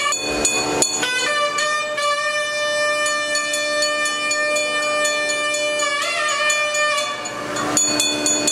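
South Indian temple music: a nadaswaram-like double-reed pipe holds one long note for several seconds, then bends into a new phrase near the end, over a steady drone, with regular drum and cymbal strokes.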